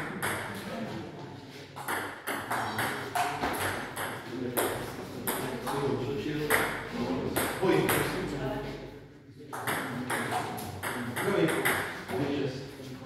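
Table tennis rally: the ball clicking off paddles and the table in quick, repeated hits, with a short lull between points.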